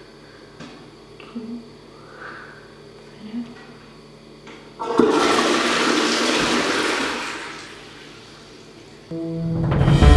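A toilet flushing: a sudden rush of water about five seconds in that holds for a couple of seconds, then dies away. Music comes in near the end.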